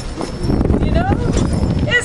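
Indistinct voices over uneven, low-pitched outdoor background noise.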